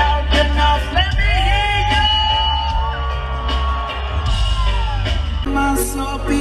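Live band playing loud amplified music: a singer holds two long notes over guitar, drums and a heavy bass.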